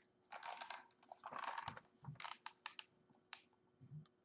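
A picture book being handled and its pages turned: quiet paper rustles and a scatter of light clicks and taps.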